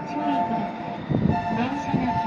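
Utsunomiya LRT Lightline HU300 series three-car tram moving at walking pace, with a steady two-tone electronic sound over its running noise. A brief louder low rumble comes about a second in.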